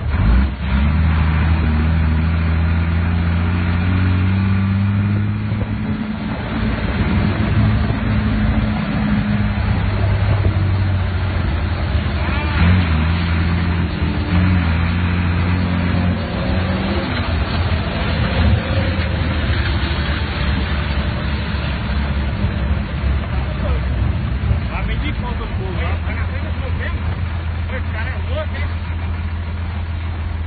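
A vehicle engine running close by, a steady low drone whose pitch shifts up and down several times as it works.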